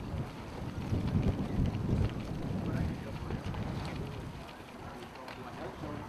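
Wind gusting across the microphone, a low uneven rumble that swells between about one and three seconds in, with indistinct voices in the background.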